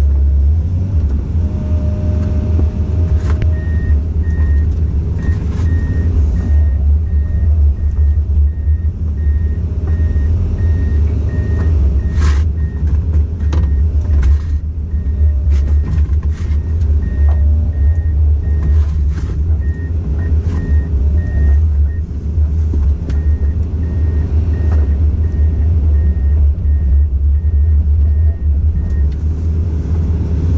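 Komatsu PC200 excavator's diesel engine running steadily with a deep rumble, while a warning alarm beeps evenly, about one and a half times a second, from a few seconds in until near the end. A few sharp cracks and knocks come around the middle.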